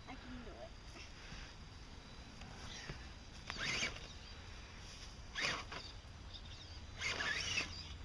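Scale RC rock crawler with a Hummer body driven in a few short, faint bursts, its electric motor whirring and tyres scrabbling on dirt and rock as it climbs.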